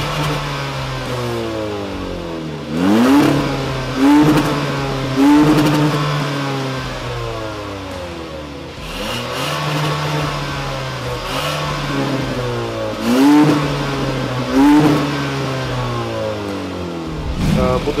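Kia Soul GT's turbocharged 1.6-litre four-cylinder idling and being blipped through a valved aftermarket exhaust with the valve closed. The revs jump and fall back about five times: three quick blips a few seconds in and two more a little after two-thirds of the way through.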